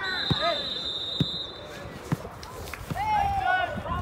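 A football thumping three times, about a second apart, as it is kicked or bounced, with children shouting on the pitch.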